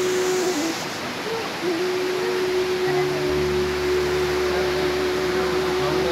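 A rocky stream rushing, with a long steady hooting tone held for about five seconds starting near the two-second mark.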